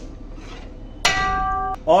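A metal ladle strikes the metal cooking pot about a second in, giving a clink that rings steadily for under a second and then stops abruptly.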